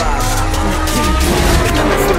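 Lamborghini Huracán Tecnica's naturally aspirated V10 engine revving as the car is driven hard, with tyre squeal and rising and falling pitch, over rap backing music with a heavy bass.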